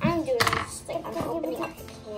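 A young child's brief vocal sounds, with small knocks and clicks of candies being handled in a ceramic bowl.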